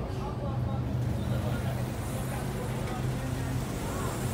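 Ikarus 435 articulated bus's diesel engine drone heard from inside the cabin while the bus is moving, a steady low hum.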